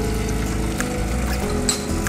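Background music over an espresso machine flushing water from its group head into the drip tray, its pump running.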